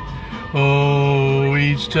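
An unaccompanied man singing, who after a short breath holds one long, steady note.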